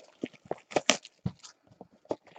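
Cardboard trading-card boxes tapping and knocking on a tabletop as they are handled and set down: about six light, separate knocks, the sharpest a little before the middle.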